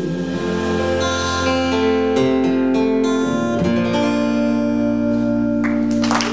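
Live band music without vocals: acoustic guitar strummed over bass and drums, holding sustained chords that change a couple of times. A wash of noise rises just before the end.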